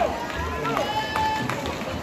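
People shouting across a pool during a water polo game, with one call held for about a second in the middle, over a steady background of crowd noise.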